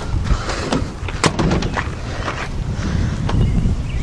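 Several knocks and clicks from handling, the sharpest about a second in, over a steady low rumble.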